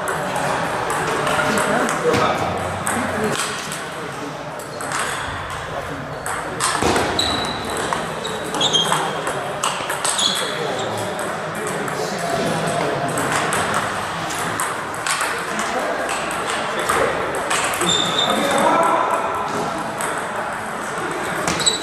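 Table tennis rallies: the ball clicks off the paddles and the table in quick, irregular series, with a few short high squeaks between the strokes.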